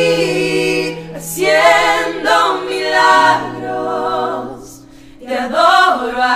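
Women's vocal group singing a slow worship song in close harmony, holding long notes over sustained low keyboard chords. The voices thin out and drop away around the fifth second, then come back in near the end.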